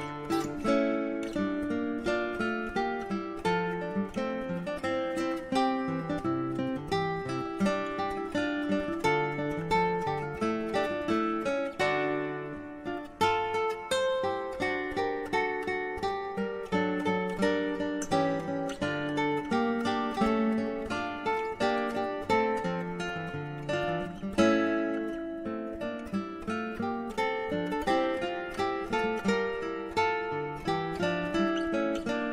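Acoustic guitar instrumental: a steady run of plucked notes and chords, easing briefly about twelve seconds in.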